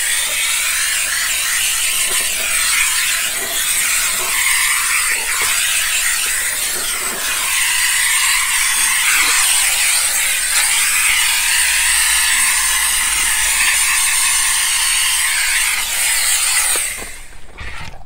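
Bissell SteamShot handheld steam cleaner blowing a jet of steam from its nozzle: a loud, steady hiss that cuts off near the end.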